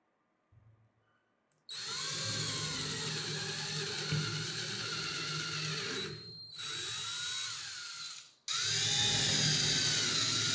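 Electric drill with a twist bit boring into a wooden block. It starts about two seconds in and runs steadily with a slightly wavering pitch. It dips briefly past the middle, stops suddenly near the end, and starts again straight away.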